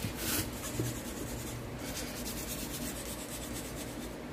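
Scraping and rubbing on hard plastic model-kit parts. A louder rasping stroke comes right at the start, followed by lighter, quick scratches and small clicks.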